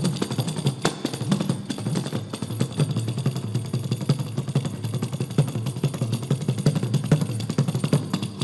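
Kanjira drumming: fast, dense finger strokes on the lizard-skin frame drum, with deep bass strokes and sharper slaps and a light jingle.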